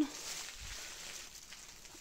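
Faint rustling of dry hay and leaves underfoot, fading away, with one soft low thump about two-thirds of a second in.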